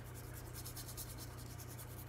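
Watercolour brush stroking back and forth across paper, a soft repeated scratchy brushing, over a steady low hum.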